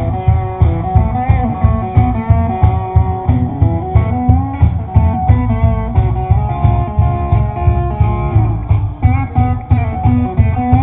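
Live band playing a song led by guitars, over a steady beat of about two beats a second.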